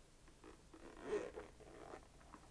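Zipper of a small zippered action-camera case being pulled open by hand, with the loudest rasp about a second in.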